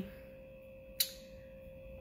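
A faint, steady, even background tone, with one sharp click about halfway through.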